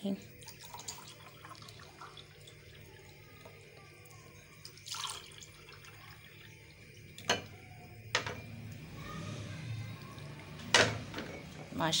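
Sharbat poured from a glass jug into two glass tumblers: a faint trickle of liquid, broken by a few sharp knocks.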